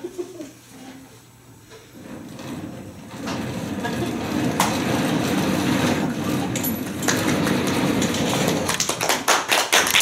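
Audience applause that builds up about two to three seconds in and keeps going, with sharp nearby hand claps growing denser near the end.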